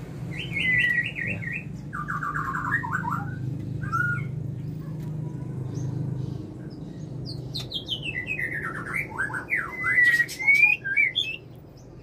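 White-rumped shama calling: a quick trill about half a second in, a faster, lower trill at about two to three seconds, then a run of varied whistles and sliding notes from about seven to eleven seconds. The male is calling at the log nest box to lure the female in, a courtship sign of a pair both ready to breed. A low steady hum runs underneath for the first seven seconds or so.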